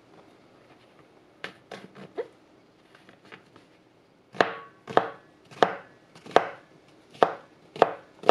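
Chef's knife cutting brown champignon mushrooms on a plastic cutting board, dicing them to 5–7 mm. A few light cuts come first, then about halfway in a steady run of about six firm chops, a little under a second apart.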